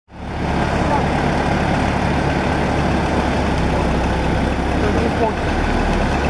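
Heavy forklift's engine running steadily with a low, even hum, fading in over the first half second.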